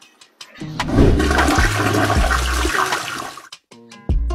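Toilet flushing: a loud rush of water starts about a second in, lasts nearly three seconds and stops shortly before the end.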